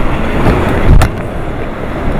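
Typhoon wind gusting, buffeting the microphone with a heavy, steady rumble. A sharp blast hits about a second in, then the noise eases a little.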